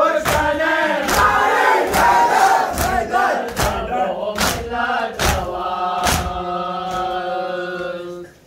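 A large crowd of men chanting a Muharram mourning lament (noha) together, with sharp strokes of chest-beating (matam) in time, a little more than once a second. Near the end the voices hold one long note.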